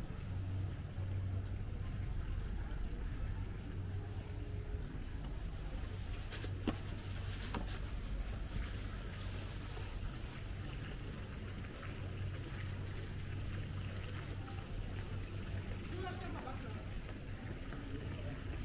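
Outdoor ambience: a steady low rumble with faint voices in the distance, and one sharp click about six and a half seconds in.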